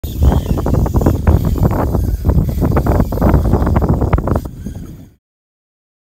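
Wind buffeting the microphone, a loud uneven low rumble broken by irregular crackles and thumps; it fades out and drops to silence about five seconds in.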